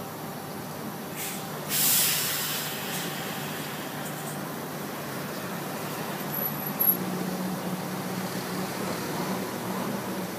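Inside a city bus: the diesel engine runs steadily, with a loud hiss of air brakes about two seconds in. There is a sharp click near seven seconds, after which the engine tone grows stronger.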